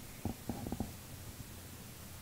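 Faint room tone with a steady low rumble, broken by a few soft, low knocks in the first second.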